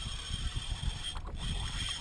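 Fishing reel working under load as a hooked spinner shark pulls against the line, over a low rumble.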